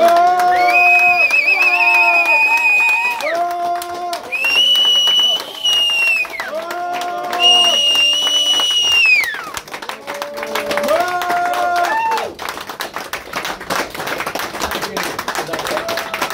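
Small club audience cheering and clapping at the end of a live song, with long whooping calls over the clapping. The calls die away about ten seconds in, leaving clapping.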